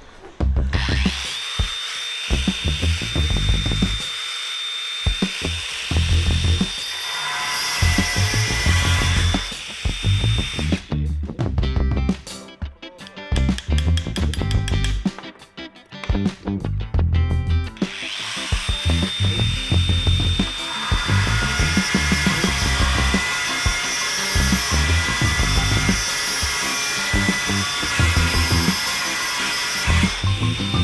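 DeWalt angle grinder with a diamond core bit running with a steady high whine as it drills into porcelain tile. It runs in two long stretches with a pause of several seconds in the middle. Background music with a steady beat plays throughout.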